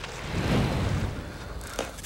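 A whooshing, rumbling sound effect that swells about half a second in and then fades, marking a supernatural materialization in a swirl of smoke.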